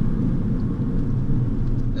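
Car driving at a steady pace, heard from inside the cabin: a steady low rumble of engine and road noise.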